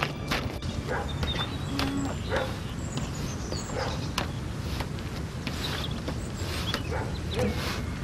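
A dog barking a few times over a low background rumble.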